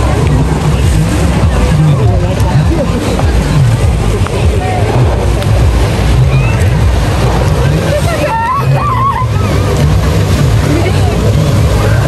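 Jet ski engine running at speed across the water, with rushing spray and people's voices over it.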